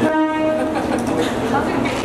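A short horn blast, one steady pitched tone held for under a second at the start, over the murmur of a crowd.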